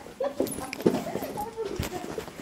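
Indistinct voices of people talking in short snatches, with a couple of sharp knocks or footfalls about a second in and near the end.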